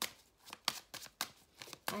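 A deck of oracle cards being shuffled by hand, the cards knocking together in a string of irregular soft clicks, the sharpest about two-thirds of a second in.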